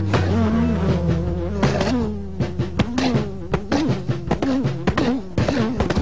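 Cartoon insect-buzz sound effect, a wavering pitched drone, with scattered clicks and a low held tone beneath.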